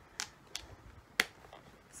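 Three sharp little clicks, the last one the loudest, from handling a jewellery box and its movable parts.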